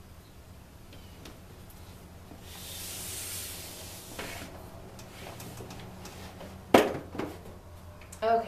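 Large display boards being shifted by hand against a whiteboard: a rubbing, sliding hiss lasting a couple of seconds, a few light knocks, then one sharp knock near the end as a board bumps into place.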